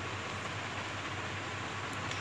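Steady background hiss with a faint low hum: room noise, with nothing else sounding.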